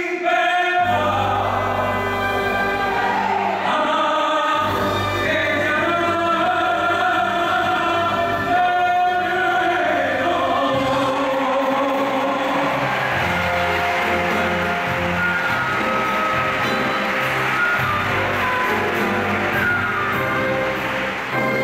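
A male singer performing a song live with a small orchestra of strings, piano, guitar and drums, the accompaniment swelling fuller in the second half.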